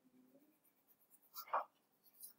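Quiet room tone with one brief scratch of drawing on paper about one and a half seconds in, as circles are drawn for counting.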